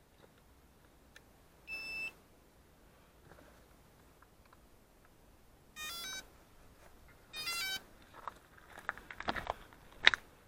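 An electronic beep, then two short runs of quickly stepping beep tones about a second and a half apart, from a small electronic device. Handling clicks and knocks follow near the end.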